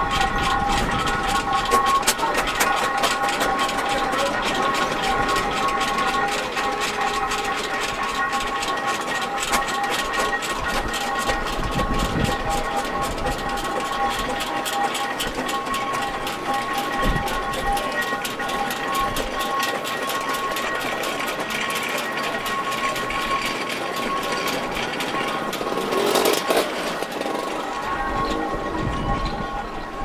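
Steam traction engines running as they drive across a grass arena, with a fast ticking and several steady high tones held throughout. Near the end comes a brief louder rush.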